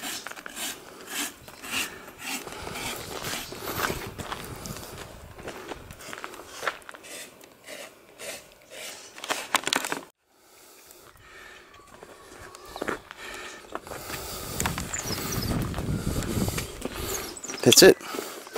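Hoof rasp scraping across a horse's hoof wall in repeated, irregular strokes for about the first ten seconds. A low rushing noise builds over the last few seconds.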